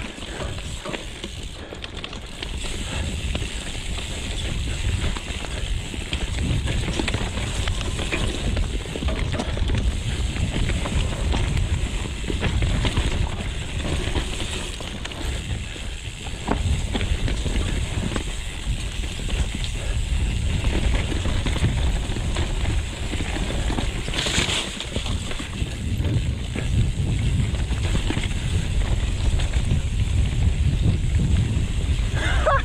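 Santa Cruz Megatower mountain bike riding fast down dirt singletrack: steady wind buffeting on the action camera's microphone, over tyre noise and the bike rattling and clattering on bumps and roots.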